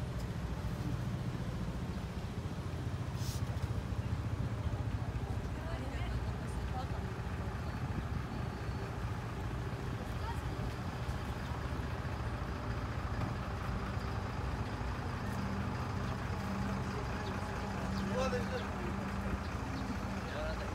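Street traffic ambience: car and bus engines running in slow traffic with a steady low hum, and indistinct chatter of passers-by.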